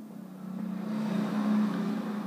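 A motor running with a steady hum and a rushing noise that swells over the first second and a half.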